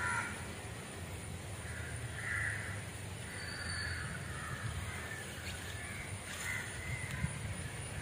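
Crows cawing, a short call every second or two, over a low steady rumble.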